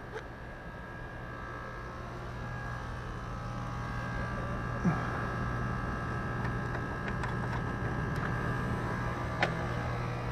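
Air-conditioner condenser compressor running with a steady electric hum that grows gradually louder. A few sharp clicks come through it, the loudest about halfway. The outdoor fan is not running, its side of the dual run capacitor having failed.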